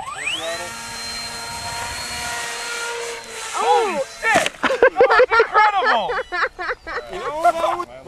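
RC plane's motor and propeller spooling up with a quickly rising whine as the plane is hand-launched, then holding a steady high whine at full throttle. About four seconds in, the plane noses into the ground: the whine cuts off with a sharp knock, and voices follow.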